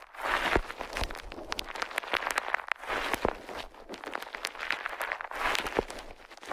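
Bubble wrap crinkled and squeezed in the hand right at the microphone: continuous crackling with many small, sharp clicks, easing off a little around the middle.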